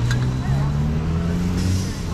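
City street traffic: a vehicle engine's low note rising slowly in pitch over a steady background of street noise.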